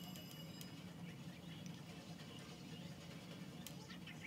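Faint, soft pats of a damp makeup sponge being dabbed against the face to blend concealer, with one sharper tick near the end, over a low steady room hum.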